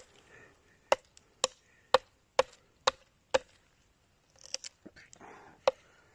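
A knife chopping at a roast chicken on a wooden stick spit: a run of sharp knocks about half a second apart, then a few lighter, irregular ones near the end.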